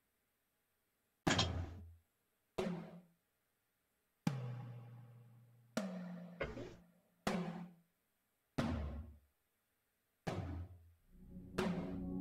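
Sampled tom drum hits played back one at a time in an irregular fill pattern, about nine strikes, each a sharp attack with a short, low, pitched ring that dies away before the next.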